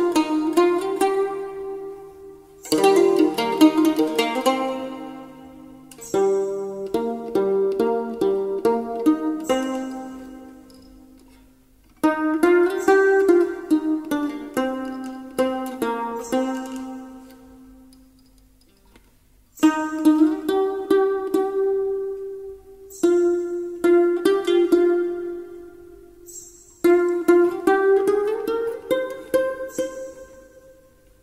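Instrumental music on a plucked string instrument, played in phrases of several notes that start sharply, ring and die away, with short pauses between them. Some held notes slide up in pitch.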